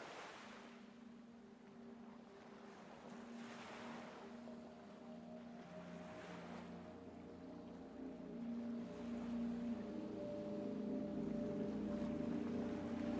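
Ocean waves washing in about every three seconds, each swelling and fading, under sustained low synth-pad tones of ambient music that grow louder and fuller from about eight seconds in.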